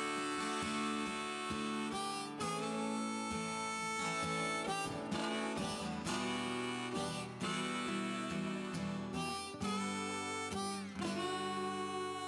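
Instrumental intro of an Americana, Texas-country song: harmonica in a neck rack playing the melody in held notes, some of them bent, over two acoustic guitars.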